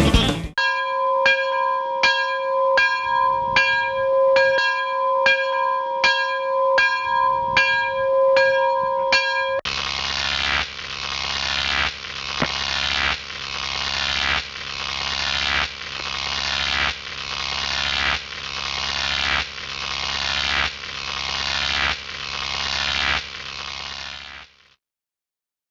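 Electronic soundtrack effect under title cards: a two-note tone pulsed about twice a second. About ten seconds in it changes to a noisy swell that builds and cuts off roughly once a second, repeating to the end.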